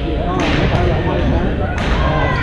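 Busy badminton hall: racket strikes on shuttlecocks ring out in a reverberant hall over a steady din of many players' voices, with two sharp hits, one about half a second in and one near the end.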